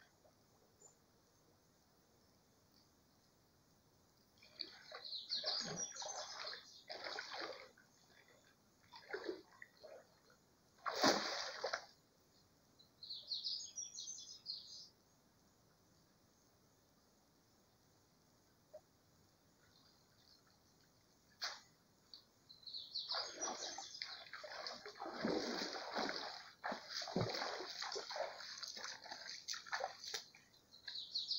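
Cast net (tarrafa) thrown into a shallow creek and worked back through the water: scattered splashes and sloshing, with one sharp splash about eleven seconds in and a longer stretch of sloshing and splashing near the end.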